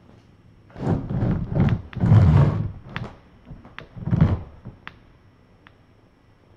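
A run of dull thumps and scuffling knocks, the loudest about two seconds in and another a little after four seconds, followed by a few light sharp clicks.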